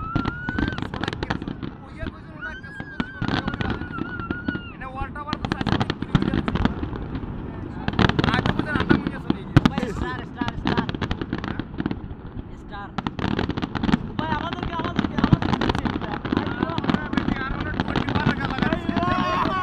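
Fireworks display: aerial shells bursting in a dense run of crackles and bangs, busiest from about six to eleven seconds in and again through the last few seconds. Onlookers' voices carry over the bursts.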